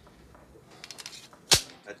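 Metallic clicks of a semi-automatic pistol being handled: a run of light clicks about a second in, then one loud, sharp snap of the action.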